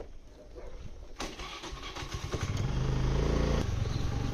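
Motor scooter engine started with the key about a second in, then running and growing louder as the scooter pulls away.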